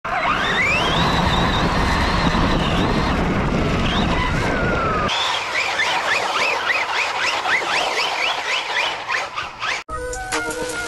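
Electric motor of a Losi Lasernut RC buggy: its whine climbs steeply and holds high as the car drives across grass, over a steady rush of tyre and wind noise. After an abrupt cut about halfway, there is a run of short rising whines, two or three a second, as the throttle is blipped repeatedly.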